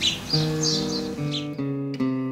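Background music: an acoustic guitar picking single notes that change every few tenths of a second, with birds chirping over the first second or so.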